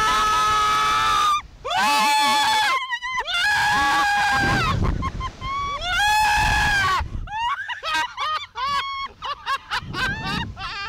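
Slingshot ride riders screaming in four long, high, held screams. About seven seconds in, the screams break into short, choppy bursts of laughter.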